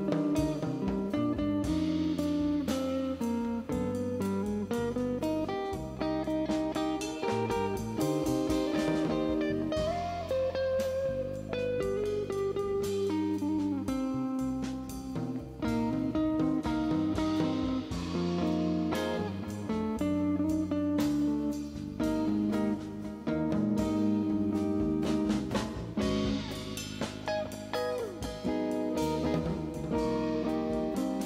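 Live instrumental jazz trio. A clean Fender Telecaster electric guitar, through a Carr Rambler amp with reverb, tape delay and compression, plays melodic lines over electric bass and a drum kit.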